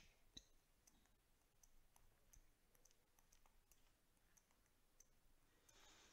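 Near silence with faint, scattered light clicks: a stylus tapping on a tablet screen while writing on a digital whiteboard.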